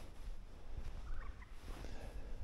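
A bird giving a brief, rapid broken call of several short notes about a second in, over a low uneven rumble.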